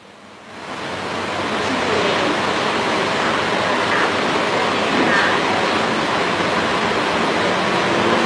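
A steady rushing hiss that swells up within the first half second and then holds level, with a faint voice audible beneath it.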